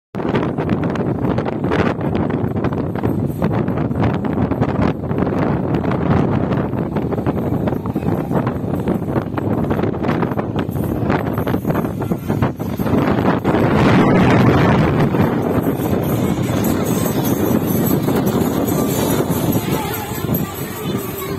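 Wind buffeting the microphone in loud irregular gusts, over the engine of an open-sided tourist truck driving past, louder around the middle.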